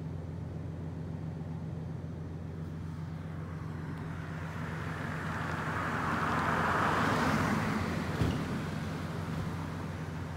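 A car driving past: its tyre and engine noise swells to a peak about seven seconds in, then fades, over a steady low hum. A single sharp click comes just after the peak.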